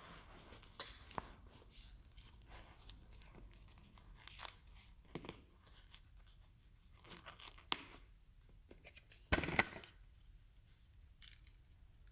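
Faint rustling and scraping of a full-face motorcycle helmet being pulled on over the head, then its chin strap webbing being worked through the D-ring buckles, with small clicks throughout and one louder rasp about nine and a half seconds in.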